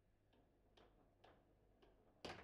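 Four faint, sharp clicks about half a second apart: a table football ball being tapped and controlled by the plastic figures on the rods.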